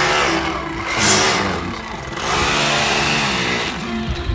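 An engine revving up and down, with a rushing noise over it.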